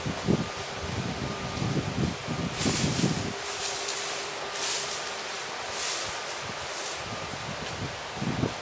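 Wind outdoors: an uneven low rumble of wind on the microphone, with a few short hissing gusts through leaves in the middle.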